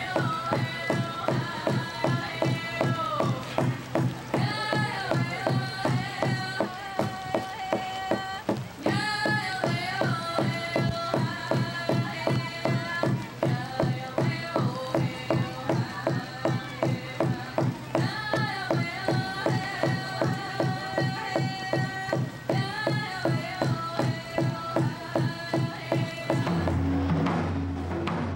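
Hand drum beaten in a steady, even beat while a woman sings a high song over it, the traditional drum song for a hoop dance.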